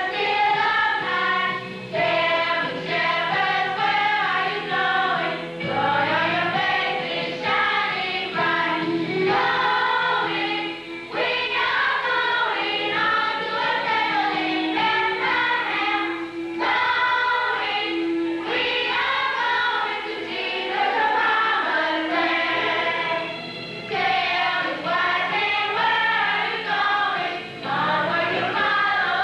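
A choir of women and children singing together, in sung phrases with short breaks between them.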